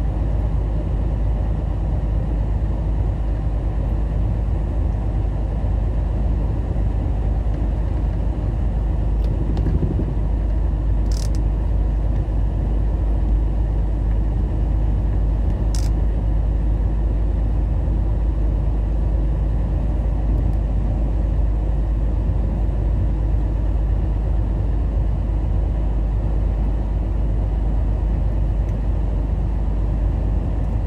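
Steady low rumble of a truck's engine and tyres heard inside the cab while cruising at highway speed. Two brief sharp clicks come a few seconds apart near the middle.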